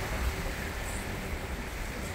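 Steady beach ambience of wind on the microphone and gentle surf: an even hiss with an uneven low rumble.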